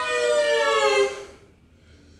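Live instrumental music: long sustained notes sliding slowly down in pitch, breaking off about a second and a half in.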